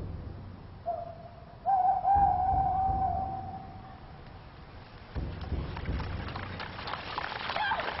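An owl hooting: one short hoot, then a longer, wavering hoot. Low rumbles swell underneath, and a crackling patter builds up in the second half.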